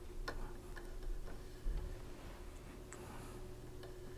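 A few light, irregular clicks and taps of a paintbrush working on watercolour paper clipped to a board, the sharpest about a third of a second in, over a faint steady hum.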